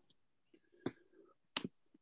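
Two faint, short clicks, about three-quarters of a second apart, against a nearly silent call line.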